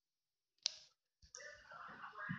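A sharp click, then close rustling handling noise, like a phone being moved about in the hand.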